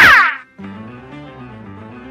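A loud cartoon comedy sound effect made of several falling pitch sweeps, cutting off about half a second in. After a short gap, light background music carries on.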